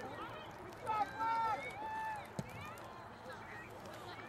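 Several voices shouting and calling out from the rugby sideline and pitch, loudest about a second in, with one sharp knock about halfway through.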